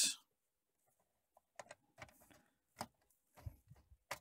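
Light plastic clicks and knocks of a Canon BJC-70 printer's top cover being handled and fitted back onto the printer body, starting after about a second and a half, scattered and irregular, the sharpest about three seconds in.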